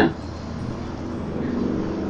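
A steady low mechanical hum holding one pitch, growing slightly louder in the second half.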